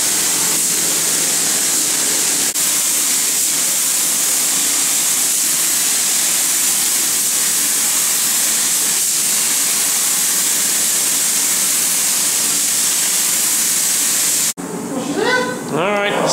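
Automotive paint spray gun hissing steadily with compressed air as a coat of colour is sprayed on, with a brief break about two and a half seconds in. The hiss cuts off suddenly near the end.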